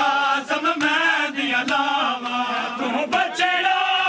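Men's voices chanting a Punjabi nauha (mourning lament) in unison, with sharp slaps of matam chest-beating landing roughly once a second.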